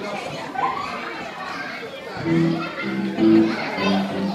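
Children's voices and chatter; about two seconds in, music starts, a tune of short held notes.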